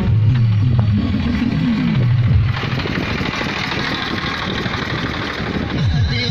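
Tractor engine running close by, mixed with music; from about two and a half seconds in, a steady rushing noise takes over.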